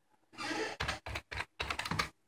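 Computer keyboard being typed on: a quick run of keystrokes starting about half a second in, entering a short command.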